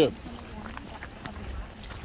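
Faint footsteps of people walking on a stone path, under a quiet outdoor background hum, after the last word of speech cuts off at the start.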